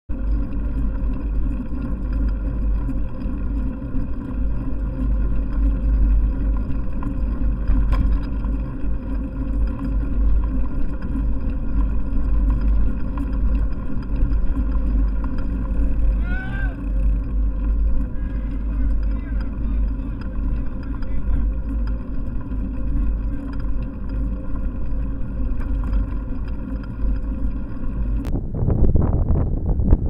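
A car engine idling close by, a steady hum with a few short chirps about halfway through. Near the end the hum gives way to wind noise on the microphone as the bike moves off.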